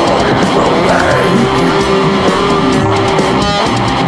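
Heavy metal music: distorted electric guitar playing a riff over drums, with one note held for about two seconds in the middle.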